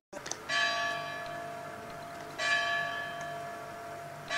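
A church bell tolling twice, about two seconds apart, each strike ringing on and slowly fading.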